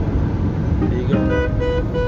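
Steady road and engine rumble inside a moving car's cabin. About a second in, several held tones come in over it and lead into music.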